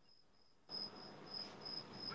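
Faint, high-pitched chirping in short pulses, several a second, with a faint hiss of room noise coming in about a third of the way through.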